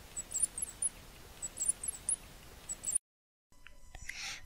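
Short, high-pitched squeaks of a small rodent, coming in small clusters over about three seconds and then cutting off abruptly.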